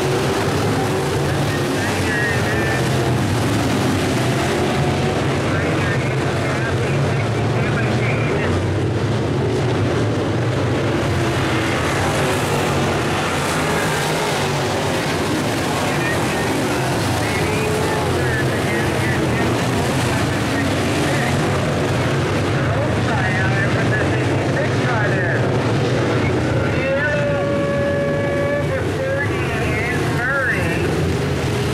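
A pack of IMCA Modified dirt-track race cars running at speed around the oval, their V8 engines making a steady, continuous drone that doesn't let up.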